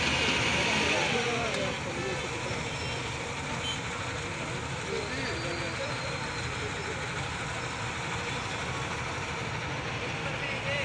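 Steady outdoor rumble of road traffic, with indistinct voices of people nearby.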